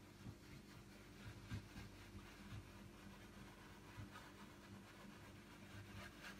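Near silence: a low steady hum, with faint soft scratches of a brush blending acrylic paint on canvas, the clearest about a second and a half in.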